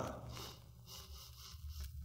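A pause in a man's spoken narration. The last word trails off at the start, then only the faint steady low hum and hiss of the recording remain.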